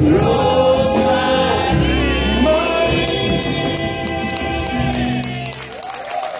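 Live band music with several voices singing a song, the audience singing along; the bass drops away near the end.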